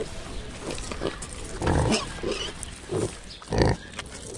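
Impala giving a series of harsh, pig-like grunts, the loudest near the end.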